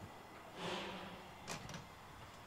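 A soft rushing noise, then a sharp click about a second and a half in and a fainter click just after.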